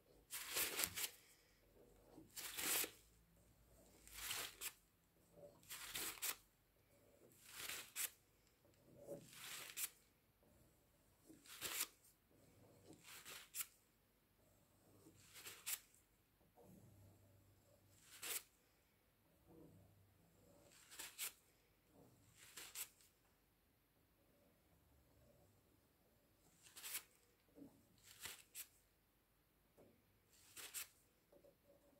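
A series of short, dry rustling scrapes, about one every one and a half to two seconds, like paper or plastic being rubbed or wiped by hand.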